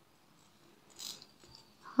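Faint, brief jingle of a fine metal necklace chain and jump ring being handled in the fingers, about a second in, against a quiet room.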